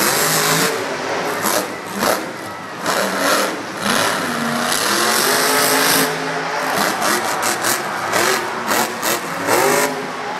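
Grave Digger monster truck's supercharged big-block V8 revving hard over and over, its pitch rising and falling as the truck drives and launches over the dirt jumps.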